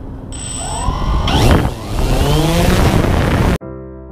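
DJI Phantom 2 quadcopter's electric motors and propellers spinning up as it lifts off: a loud whirring with whining tones that rise and fall in pitch. About three and a half seconds in it cuts off abruptly and electric piano music begins.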